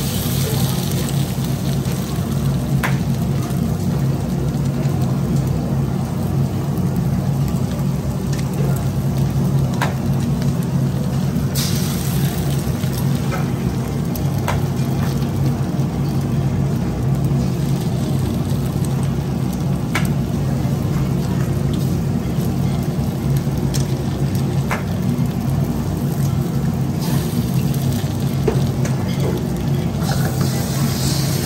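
Eggs cracked one at a time on the rim of a hot carbon-steel wok, each a sharp click, with short bursts of sizzling as they drop into the oil over frying onion. Under it runs a loud, steady low hum.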